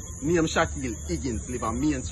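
A man talking in short bursts, unclear and not transcribed, with a steady high hiss from a phone recording underneath.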